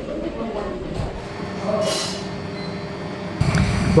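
15-inch-gauge miniature railway train running on the track: a steady low rumble with a brief hiss about two seconds in, getting louder shortly before the end.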